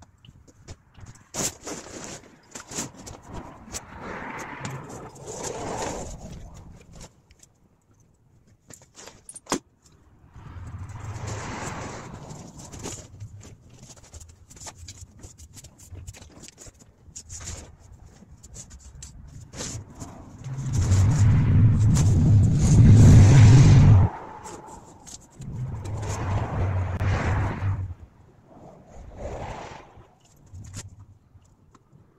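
Deflated inflatable basketball hoop being rolled up by hand: its vinyl fabric rustles, crinkles and scrapes on asphalt in several bouts, with scattered sharp clicks. The loudest bout, about two-thirds of the way through, carries a heavy low rush.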